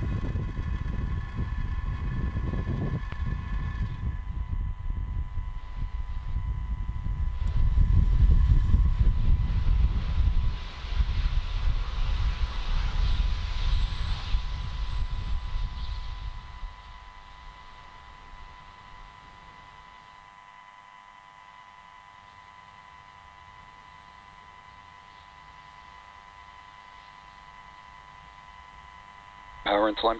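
Falcon 9 first stage's nine Merlin 1D engines rumbling deep and loud during ascent, strongest about eight to ten seconds in, then falling away sharply about sixteen seconds in to a much quieter level with a faint steady high tone.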